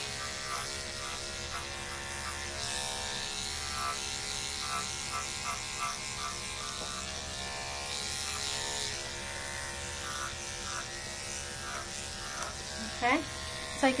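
Electric dog clippers fitted with a 7F finishing blade, running with a steady hum as they shear a standard poodle's coat.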